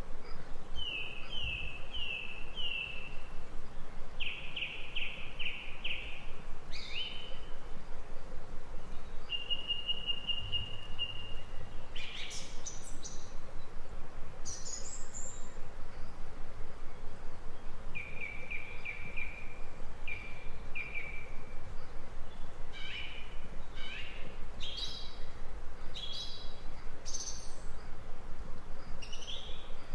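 A songbird singing in short phrases of clear, repeated whistled notes, including a rapid trill and some high upslurred notes, with pauses between phrases, over a steady background hiss.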